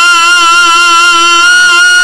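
A man's voice holding one long, loud sung note into close microphones, steady in pitch with a slight waver: the drawn-out melodic cry of a sermon chanted in song.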